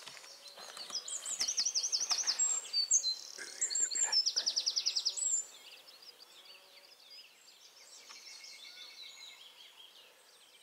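A songbird singing loudly for about five seconds: fast runs of repeated high sweeping notes and a quick trill. Fainter birdsong follows.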